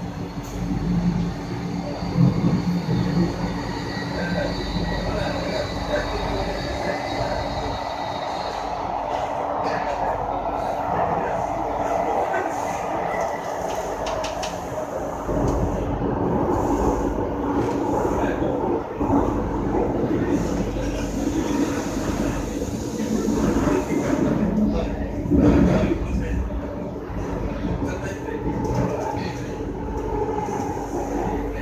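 Interior sound of an SMRT C751B metro train running through a tunnel: a continuous rumble of wheels on rail, with a high steady whine for the first several seconds that then fades.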